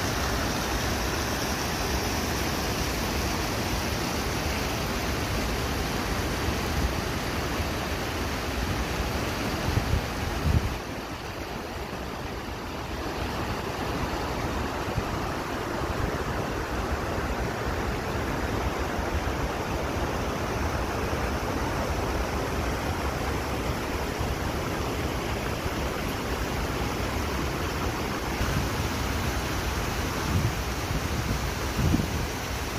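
River water rushing over a low concrete weir and small stone cascades, a steady full rushing noise. The rush dips slightly about eleven seconds in.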